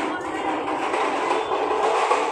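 Metal stretcher trolley rattling steadily as it is wheeled on small casters over rough paving.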